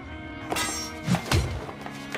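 Anime fight sound effects: a run of heavy impact thuds starting about half a second in, the two loudest just past the middle, over soundtrack music with sustained tones.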